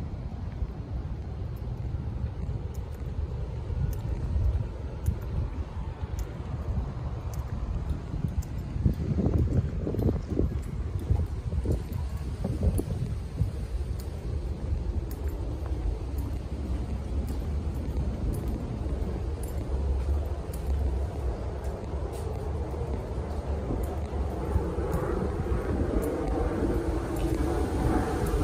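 Night street ambience picked up by a handheld phone: a steady low rumble of wind on the microphone and traffic, with a run of louder knocks about ten seconds in.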